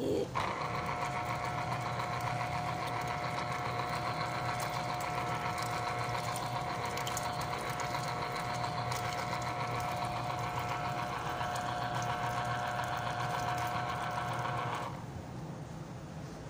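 Electric citrus juicer's small motor running with a steady hum as an orange half is pressed down onto its spinning reamer; it starts just after the beginning and cuts off about a second before the end, when the fruit is lifted.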